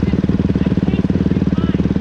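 Dirt bike engines running steadily at low speed as the bikes roll slowly, a constant low note made of rapid, even firing pulses.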